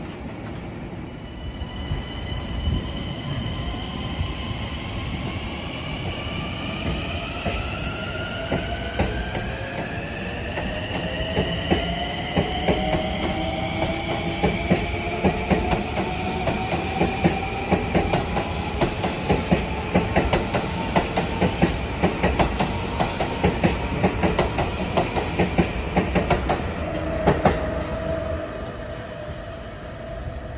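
LIRR M9 electric multiple-unit train pulling away and accelerating. Its traction motors give a whine of several tones rising in pitch as it gathers speed. From about halfway in, its wheels click over the rail joints faster and faster.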